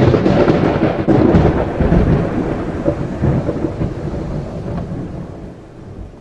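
Congregation applauding, with dense clapping that breaks out suddenly as the dance music stops and slowly dies away.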